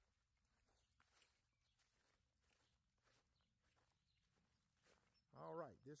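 Near silence with faint footsteps crunching on gravel, a few irregular steps; a man starts speaking near the end.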